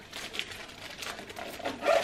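Light rustling and crinkling as a woven leather handbag and its packaged straps are handled, ending with a short voice-like whine that bends up and down.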